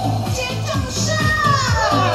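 Dance-pop backing track between sung lines, with a steady low beat and high sliding sounds over it.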